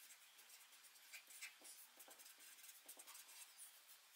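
Faint scratching and squeaking of a felt-tip marker writing on paper, an irregular run of short pen strokes.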